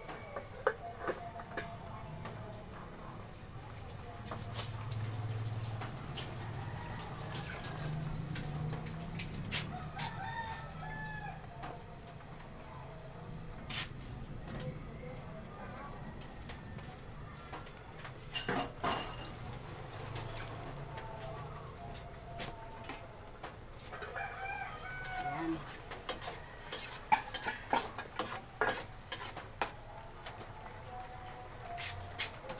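Chickens clucking and crowing in the background over a low steady hum. Near the end comes a run of sharp metallic clicks and clatter from a pot lid and a spatula against a wok.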